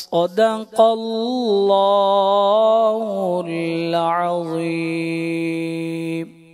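A man reciting the Quran (tilawat) in a melodic chanted style into a microphone: a quick breath, an ornamented rising-and-falling phrase, then one long held note from about halfway through that closes the recitation.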